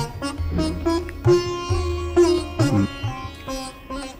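Instrumental music: a plucked string instrument playing a slow melodic phrase of separate notes over a low sustained tone.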